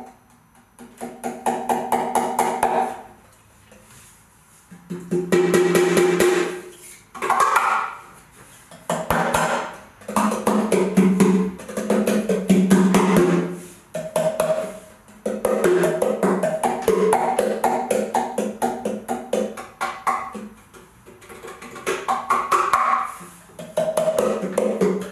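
Wooden percussion box played with the fingers on square pads along its top, each pad sounding its own pitched note. Quick rhythmic phrases of tuned knocks, broken by short pauses.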